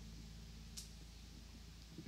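Quiet pause: a low steady hum with a single faint click about a second in.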